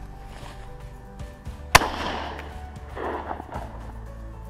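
A single shot from a 12-gauge over-and-under shotgun (Beretta Silver Pigeon) firing a 32 g game load: one sharp crack a little under two seconds in that rings on briefly, followed about a second later by a duller burst of noise.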